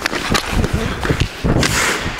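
Ice hockey skate blades cutting and scraping on rink ice, with sharp clacks of stick on puck as a shot is taken and followed to the net; a longer scrape of the skates comes about a second and a half in.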